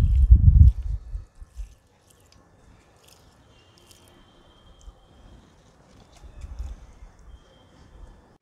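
Low rumbling thumps on the microphone for about the first second and again, weaker, near the end. Between them come faint scattered clicks.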